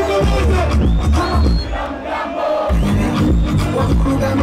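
Loud bass-heavy music playing through a concert PA, with a large crowd shouting and cheering over it.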